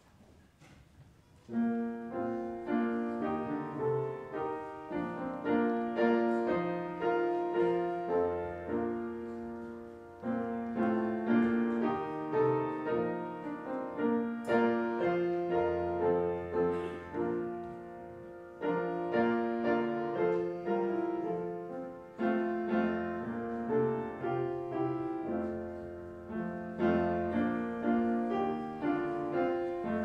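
Upright piano playing a tune with chords, starting about a second and a half in.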